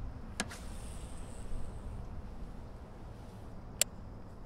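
Clicks from a baitcasting rod and reel being handled: a soft double click just after the start, then a sharp click near the end, over a low steady outdoor rumble.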